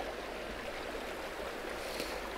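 Small rocky creek: water running over and between stones, a steady rush.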